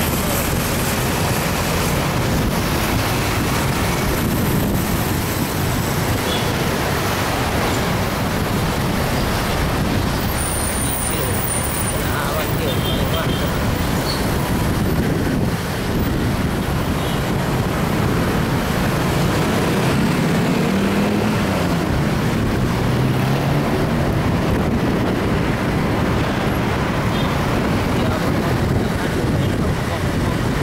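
Steady road and traffic noise heard from a moving motorcycle in city traffic, with an engine note that rises and then falls about two-thirds of the way through.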